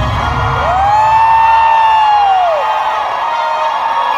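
Live concert sound from the audience: loud stage music whose low beat drops away early on, with a crowd cheering. One long, high whoop rises, holds for about two seconds and falls away, and is the loudest sound.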